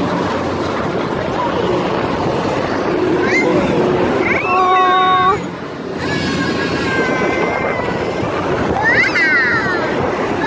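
Fairground ride background: a steady rush of noise with distant voices mixed in. A few brief high-pitched calls come around the middle and near the end.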